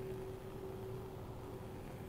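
Faint steady hiss with a thin, steady low hum. This is the background of a lab bench where a Bunsen burner is burning.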